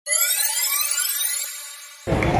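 Electronic intro sound effect: a bright synthetic sweep of several high tones gliding upward together, starting suddenly and fading away over about two seconds.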